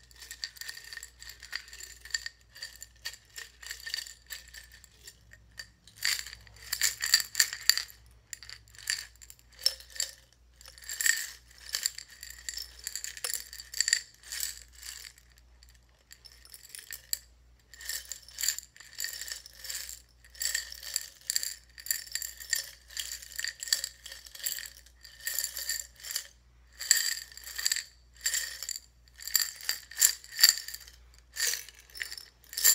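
Loose buttons rattling and clinking against the inside of a glass jar as it is tilted and shaken. The clicks come in bursts of a second or two with short pauses between.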